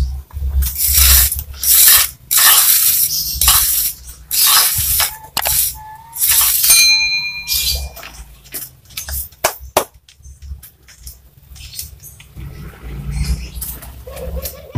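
A ceramic floor tile is pushed and slid by hand over the mortar bed on a concrete ledge, giving a run of rough scraping strokes, mostly in the first half. A short electronic chime rings about seven seconds in.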